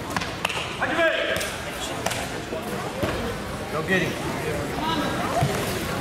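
Spectators and officials chattering, with scattered sharp knocks. A single call of "go" comes about four seconds in, as the match starts.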